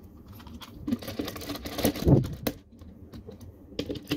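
Hard plastic toy parts clicking and clattering as the DX Swordfish Zord pieces are handled and snapped onto the Samurai Megazord, with a dense run of clatter in the middle that is loudest about two seconds in, then a few lighter clicks near the end.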